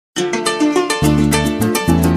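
Instrumental opening of llanero joropo music: a harp plucked in a quick running pattern, with deep bass notes coming in about a second in.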